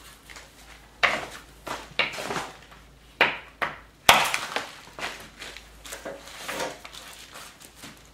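Hammerstone knocking on a small flint nodule held on a stone anvil in bipolar knapping: a series of sharp stone-on-stone knocks, the loudest about four seconds in.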